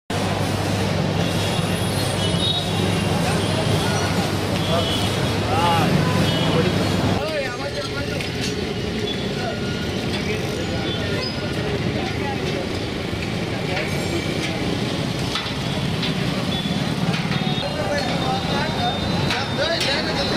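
Outdoor street ambience: steady traffic noise with indistinct voices of people talking around, and a low hum under the first part that drops away about seven seconds in.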